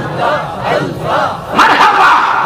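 A crowd of men chanting Jalali zikr, Sufi remembrance of God, together in loud, overlapping shouted calls amplified through microphones, swelling again near the end.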